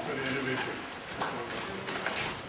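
Indistinct talking in a room, with a few scattered sharp knocks at irregular intervals.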